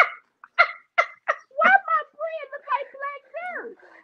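Only a woman's voice: short, broken vocal sounds and murmured words with brief pauses between them.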